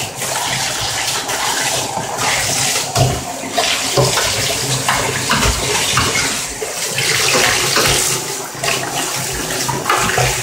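Water running steadily from a bathtub spout into the tub. A few short low thumps come through the running water about three to six seconds in.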